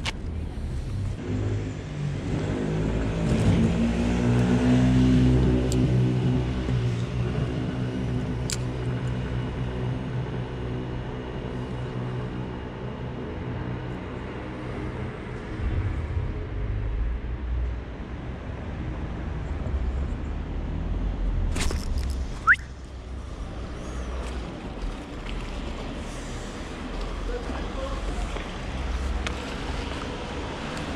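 A motor vehicle engine running, its pitch rising over the first few seconds, then holding steady before fading away, over a low traffic rumble. A single sharp click about two-thirds of the way through.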